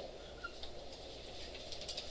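Dry-erase marker scratching faintly on a whiteboard in short strokes, with a small squeak about half a second in and a quick cluster of strokes near the end, over steady room hum.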